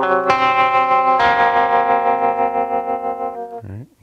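Guitar picking through a chord one string at a time: a few notes struck in quick succession in the first second or so, then left ringing together and fading over about two seconds.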